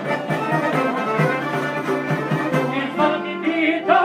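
Instrumental break in an Albanian folk song: a busy instrumental passage that settles into held notes near the end, just before the singing comes back in.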